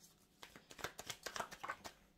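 Tarot cards being shuffled by hand: a faint, irregular run of quick soft card clicks and flicks.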